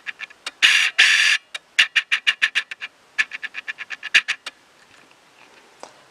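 Computer mouse scroll wheel ticking in quick, even runs of about ten clicks a second, twice, after two short bursts of hiss about a second in.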